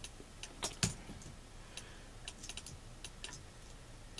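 Faint, irregular clicks and taps of typing on a computer keyboard, a dozen or so spread across the few seconds, the loudest two close together just under a second in.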